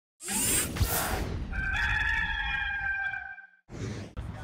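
Intro sting: a loud whooshing burst, then a rooster crowing in one long held call lasting about two seconds, then a short whoosh near the end.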